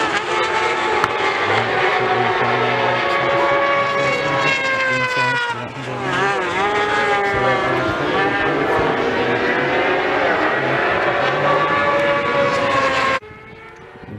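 Several 600cc racing motorcycles passing at speed, their engines at high revs with the pitch rising and falling through the corners. There is a brief dip about six seconds in, and the sound cuts off suddenly near the end.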